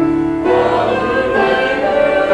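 Choir singing a slow hymn in long held notes that move step by step: the offertory hymn sung while the gifts are brought to the altar at Mass.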